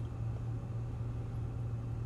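A steady low hum with faint even background noise, with no change through the pause.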